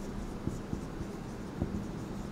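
Marker writing on a whiteboard: faint rubbing of the tip, with a few light taps as it meets the board.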